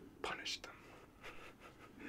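A man's faint whisper: a short, breathy, hissing utterance about a quarter second in, without full voice.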